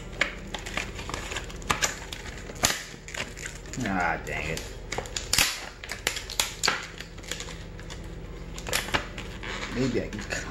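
Brittle, sun-aged plastic card packaging being forced and torn open by hand: a run of sharp crackles and snaps.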